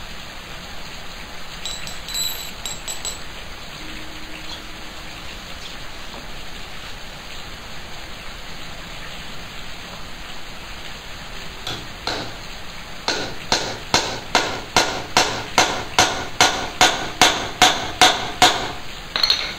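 A rapid series of sharp metal-on-metal chops, about two to three a second, each with a short ringing tone: a blade striking nails laid on a wooden block to cut through them. The chopping starts about twelve seconds in, after a stretch of steady hiss.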